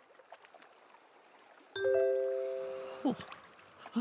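A cartoon sound-effect chime: a single bell-like ring of several tones that starts about halfway through and fades over about a second. A short falling swoop follows near the end. Before the chime there is only a faint hiss.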